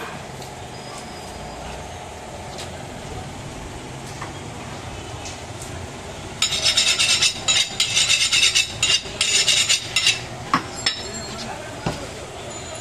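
A butcher's steel knife working fast against hard material, a loud run of quick rasping, clinking strokes lasting about four seconds, starting about halfway in, over steady market background noise.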